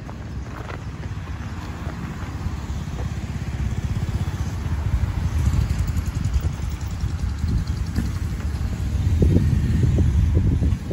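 Road traffic: cars, one a minivan, passing close by, heard as a low rumble that grows louder and peaks about halfway and again near the end, mixed with wind rumbling on the microphone.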